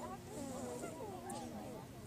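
Distant, overlapping voices of children calling and chattering across an open field, with a low steady hum that comes and goes.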